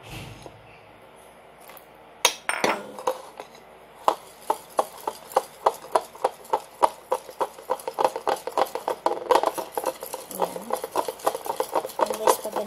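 A metal utensil beating thick tempura-flour batter in a ceramic bowl. After two knocks it clicks against the bowl about three to four times a second from about four seconds in.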